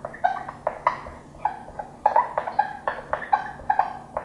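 Green marker squeaking on a whiteboard as a word is handwritten: a quick run of short, high squeaks, several a second, one for each pen stroke.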